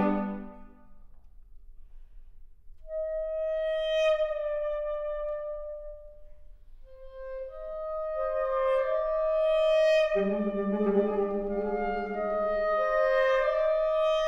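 Saxophone quartet playing classical chamber music: a loud chord cuts off at the start and rings on briefly in the hall. After a pause, one saxophone holds a long note, a second joins, and the lower saxophones come in about ten seconds in for a full chord.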